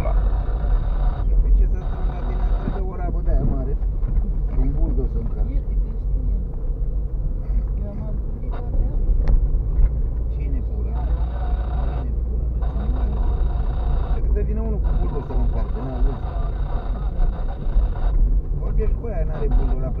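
Steady low rumble of a car's cabin as it drives along a rough, potholed dirt road, with indistinct voices talking over it.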